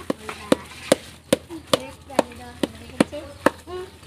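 A paddle knocking against the side of a large metal wok in a steady rhythm, about two to three sharp knocks a second, as a thick mass of sticky-rice biko is stirred and folded.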